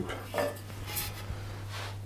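Light kitchenware handling: a metal mini-muffin tray being picked up and a small metal ice cream scoop dipping into a glass bowl of batter, giving three short clinks and scrapes of metal on metal and glass.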